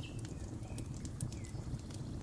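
Wood fire crackling with scattered sharp pops over a low steady rumble, while a bird gives a couple of short, falling chirps.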